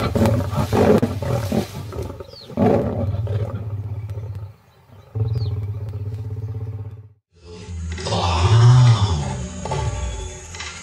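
Lionesses snarling and growling at each other in a fight, in rough, raspy bursts, then a steadier low, pulsing growl. After a sudden brief break about seven seconds in, a louder, deeper lion roar.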